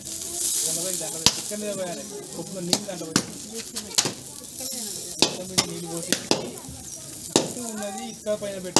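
Homam wood fire crackling with sharp, irregular pops, with a hiss of sizzling about half a second in as offerings go into the flames.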